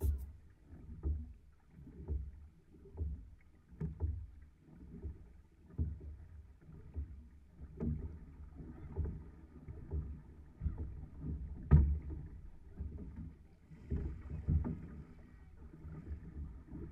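Six-person outrigger canoe being paddled, with the strokes sounding as low pulses about once a second over a low rumble of water along the hull. A sharper knock about twelve seconds in is the loudest sound.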